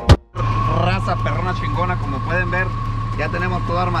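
A 2002 Chevrolet Silverado's engine idling steadily, a low hum with a thin steady whine above it. It is running to warm the transmission and to check the new transmission cooler lines for leaks. A last beat of background music cuts off right at the start.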